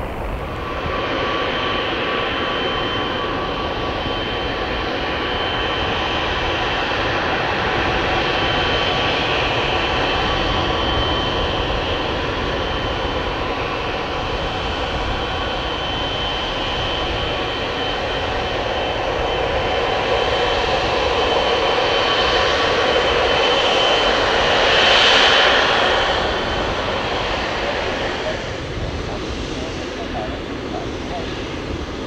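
Boeing 777-300ER's GE90 turbofan engines at taxi power: a steady jet roar with a high, even whine. It grows loudest about 25 seconds in as the aircraft passes, then eases off.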